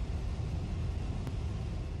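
Steady low rumble of wind and fire at a wildfire where a fire whirl is forming.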